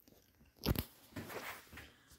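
Handling noise from the phone filming: one sharp knock about two-thirds of a second in, then a short stretch of rustling and rubbing as the phone is moved and fingered.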